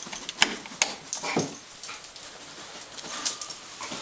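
A bed bug detection dog sniffing in short, irregular bursts as it searches, with a few sharp knocks among them.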